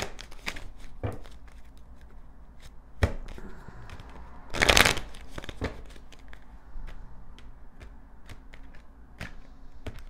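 A small deck of divination cards being shuffled by hand: a run of soft card clicks and slaps, with a louder burst of shuffling about halfway through.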